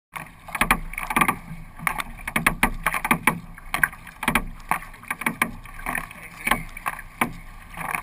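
Kayak paddle strokes: the blades splash into and pull out of the water, with drips, a couple of splashes each second in an uneven rhythm.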